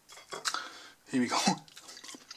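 Metal fork clinking and scraping against a ceramic plate, a few light clinks in the first half second, as a potato pancake is speared and lifted off.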